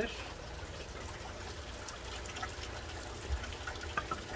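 Water trickling steadily into an aquaponics fish tank from the grow towers, over a low steady hum, with a few faint light knocks.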